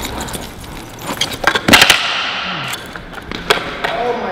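A carbon fiber frame longboard in a trick attempt on concrete: a cluster of sharp clattering knocks about one and a half seconds in, then a brief rush of the wheels rolling, and another single knock near the end.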